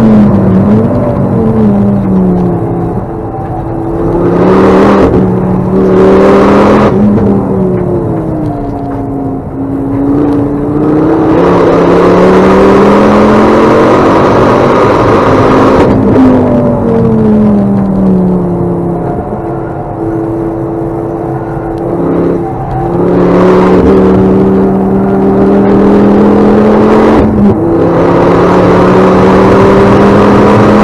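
Ford Focus ST track car's engine, heard from inside the cabin while being driven hard. The revs climb in long pulls and fall away several times as it accelerates and slows for corners.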